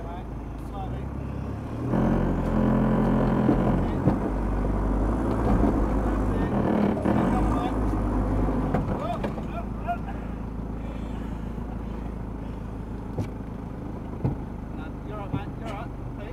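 Four-wheel drive's engine heard from inside the cabin, revving up about two seconds in and pulling under load as the vehicle crawls over rocks, then dropping back to a steady idle for the last several seconds.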